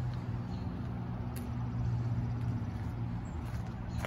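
A steady low mechanical hum with a faint overtone, under even background noise.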